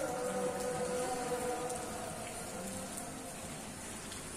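Shallow sea water lapping and splashing among rocks, a steady noisy wash. A faint steady hum sits under it in the first half and fades.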